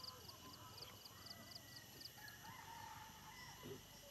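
Near silence: faint outdoor ambience with a high, even chirping about four times a second and a few faint distant calls.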